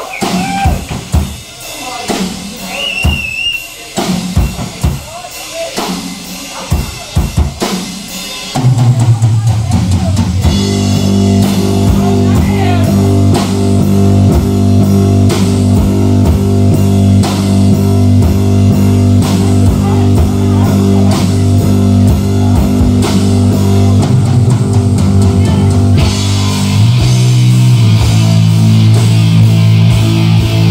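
A rock drum kit played alone for about eight seconds, then a black metal band's distorted guitar and bass come in loud over the drums, with a change of chord near the end. It has the raw sound of a live audience tape.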